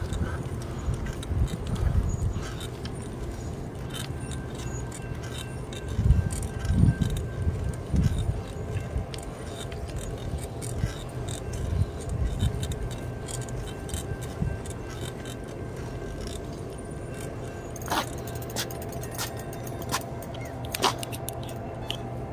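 Bicycle in motion on a paved path: light rattling and jangling from the bike and its load, with gusts of wind on the microphone and a few sharp clicks near the end.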